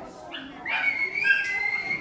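Spectators whistling: several high, wavering whistled notes that step up and down, starting about half a second in, just after a crowd chant breaks off.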